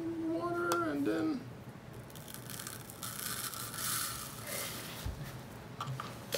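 Soft scraping and rustling from a pink plastic spoon working wet hydrophobic sand in a small plastic cup, lasting a couple of seconds, with a light thump near the end.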